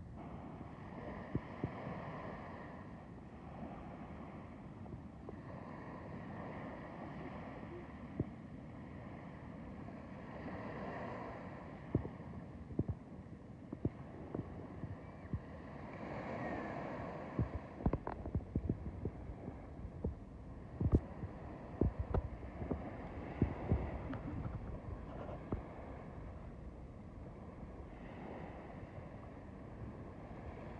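Small waves washing onto a sandy beach in slow swells every four to six seconds, with irregular low thumps and clicks on the microphone, most of them in the second half.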